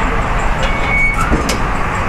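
Steady traffic noise from passing vehicles, with a brief high squeal about half a second in.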